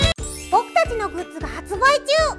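The song cuts off right at the start and a short rising sparkle sound effect leads into a bright, children's-style outro jingle. A high-pitched cartoon character voice speaks over it.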